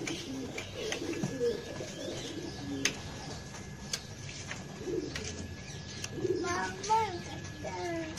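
White German Beauty pigeons cooing in low, repeated coos, mostly in the first few seconds and again later. A child's voice comes in near the end.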